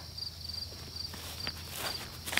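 Insects chirping outdoors in short, high, evenly repeated pulses, with faint footsteps on grass near the end.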